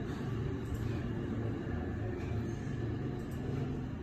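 A steady low rumble with a few faint ticks, unbroken for the whole stretch.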